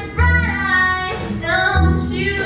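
A woman singing, accompanied by her own acoustic guitar and an orchestra, with deep bass notes sounding under the voice.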